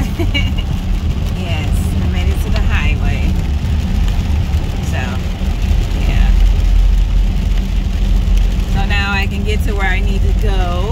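Steady low rumble of a car's engine and tyres heard from inside the cabin while driving at highway speed. Short snatches of a voice come through, most clearly near the end.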